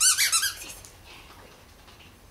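Squeaky toy ball squeezed several times in quick succession: a loud burst of about five high squeaks within the first half second.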